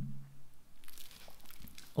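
Soft rustling of clothing with a few small clicks, from a man sitting back up out of a seated forward bow on a yoga mat.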